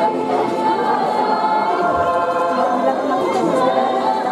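A church choir singing a communion hymn, many voices together, at a steady loud level.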